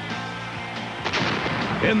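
A held music chord, then a sudden loud bang about a second in, a sound effect in a TV commercial, with its echo trailing on.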